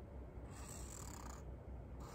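Felt-tip marker drawing a stroke on a cardboard autograph board (shikishi): a faint, short hiss of the tip on the board about half a second in, over a low steady room hum.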